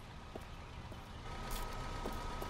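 Low rumble of a car, with a steady high tone coming in a little over a second in, and a faint click.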